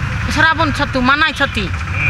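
A woman speaking, over a steady low background rumble.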